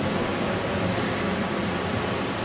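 Steady hiss of background noise in a pause between spoken sentences, even and unchanging.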